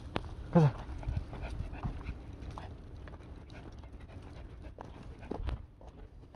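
Small leashed dogs panting as they walk, with light ticks and scuffs of paws and steps on pavement. A short whimper comes about half a second in.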